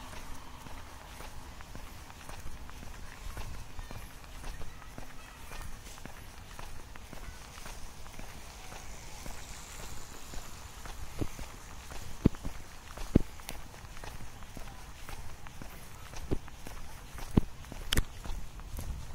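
Footsteps of a person walking on a paved path, a faint tick about every half second, with a few sharper, louder clicks in the second half. A low rumble runs underneath.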